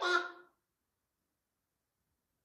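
A short stretch of a voice in the first half second, then complete silence.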